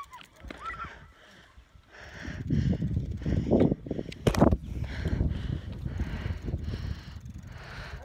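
Wind rumbling and buffeting on the microphone while cycling along a rough road, setting in about two seconds in and surging unevenly, with a sharp knock just past four seconds.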